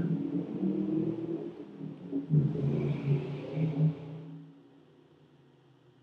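A low rumble with a steady hum, swelling a little in the middle and then fading away about four and a half seconds in.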